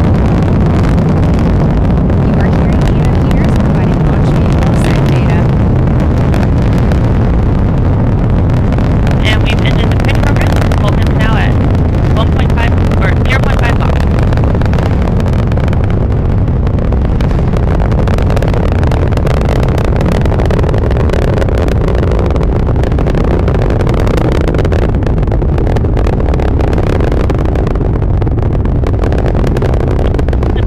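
ULA Vulcan rocket in powered ascent, its BE-4 methane engines and solid rocket boosters firing: a loud, steady low rumble with continual crackling.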